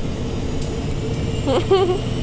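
A bus driving, heard from inside the passenger cabin: a steady low engine and road rumble with a constant hum. A voice is heard briefly near the end.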